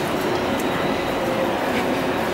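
Steady, fairly loud background noise of a crowded hall, with no single clear source standing out.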